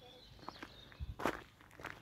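Quiet footsteps on a grassy dirt path, a few soft steps with the clearest one about a second in.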